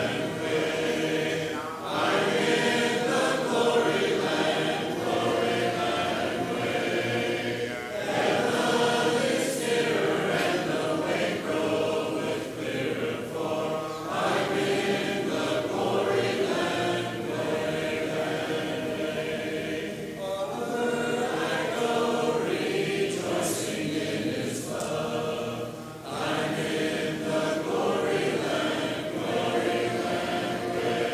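Congregation singing a hymn a cappella, many voices together without instruments, in phrases about six seconds long with short breaks between them.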